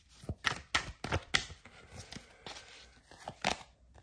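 A deck of Oracle du Soleil levant cards shuffled by hand, giving a run of short, irregular clicks and taps of card edges, thinning out in the middle and picking up again near the end.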